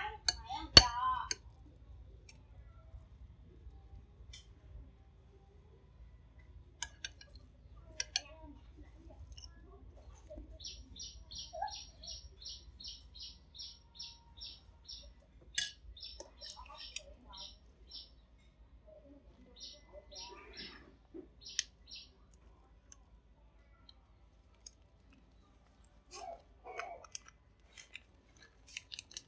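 Mostly quiet, with a few sharp light clicks and taps from a metal spoon on a bowl and board. In the middle a small bird chirps in a quick, even series, about three or four chirps a second, for several seconds, then again in shorter runs.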